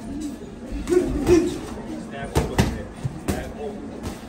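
Punches landing in boxing sparring, gloves smacking on gloves and body: a few sharp hits, three of them close together in the second half.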